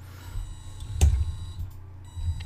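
Small electric motors of a Makeblock-built LEGO testing machine running steadily as its arm cycles, with one sharp click about a second in.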